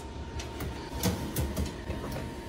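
Kitchen handling noise: several light knocks and clicks over a steady low hum and a faint steady whine.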